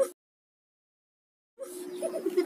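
Dead digital silence at an edit. A sliding, boing-like sound effect cuts off right at the start, and a quieter clip with a steady tone comes in about a second and a half later.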